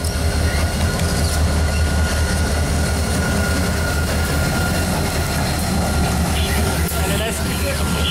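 A pair of EMD diesel locomotives running light, led by an SD40 with its 16-cylinder two-stroke engine, passing close by with a steady, deep engine rumble.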